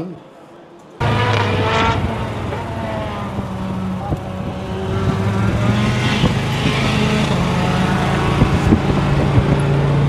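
Race car engines running on the circuit, with the engine notes rising and falling as cars pass, over a steady engine drone. The sound cuts in suddenly about a second in.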